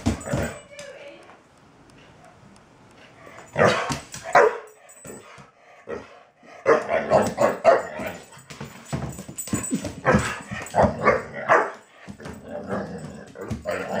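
A young dog barking in play at a cat: one short cluster about four seconds in, then a long run of repeated barks from about seven to eleven and a half seconds.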